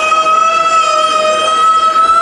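A single long, steady, siren-like tone with a slight waver, played loud over the stage speakers as part of the dance routine's music mix.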